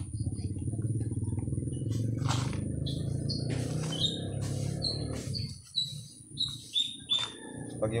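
A small bird chirping a row of short, high calls, about two a second, over a steady low rumble that stops about five and a half seconds in.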